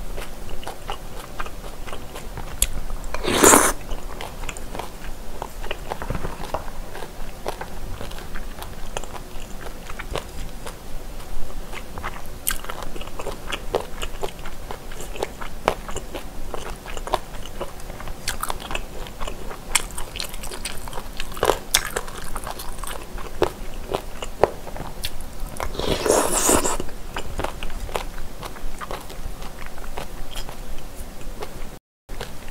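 Close-miked chewing and biting of spicy boneless chicken feet: many small wet clicks and some crunches. Two louder, longer noisy sounds come a few seconds in and near the end.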